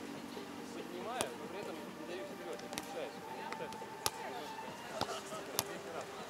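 A volleyball being struck during a rally: about four sharp slaps of hands and forearms on the ball, spaced a second or more apart.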